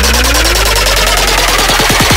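Dubstep build-up: a synth sweep rises steadily over a held low bass, and about halfway through a run of rapid drum hits comes in, quickening toward the drop.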